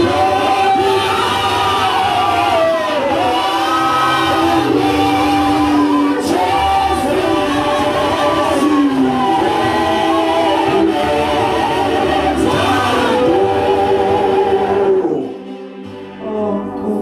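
A group of voices singing a worship song, amplified through the PA, with a voice leading on the microphone. The singing breaks off about a second before the end.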